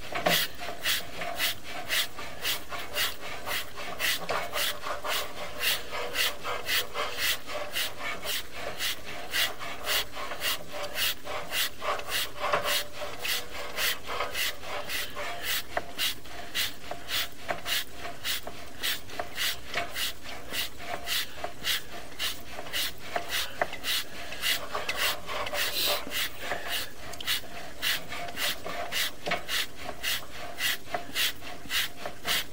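Sewer inspection camera's push cable being fed along a 4-inch sewer line: a steady rhythmic rasping rub, about two to three strokes a second.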